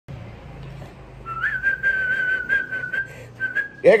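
A man whistling a long, steady high note that rises slightly as it starts, breaks off briefly, and resumes for a shorter stretch near the end.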